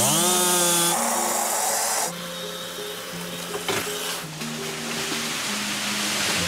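A chainsaw revs up with a rising whine and cuts into the trunk of an ash tree for about two seconds, then drops away. Background music continues, and a rushing swell of noise builds near the end as the felled tree comes down.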